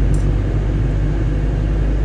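Steady low rumble of a moving vehicle's engine and tyres, heard from inside the vehicle while it drives at a constant speed.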